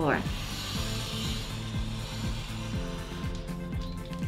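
Craft knife drawn along a steel-edged ruler, slicing through 200 g card in one stroke of about three seconds. Background music with a steady beat plays underneath.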